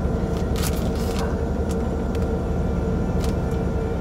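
Steady low hum of a car's engine idling, heard from inside the closed cabin, with a few faint clicks from a paper packet being handled.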